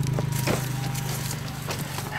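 A car door being opened: a few sharp clicks and knocks from the handle and latch, over a low steady hum that fades away.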